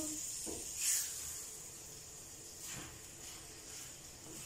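Steak strips in a masala sauce sizzling quietly in a frying pan, with a few soft strokes of a wooden spoon stirring them.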